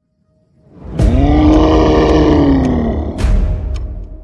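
A deep animal roar sound effect with a heavy rumble, starting about a second in with a sharp rise and then slowly falling in pitch for about two seconds, followed by a sharp hit a little after three seconds in.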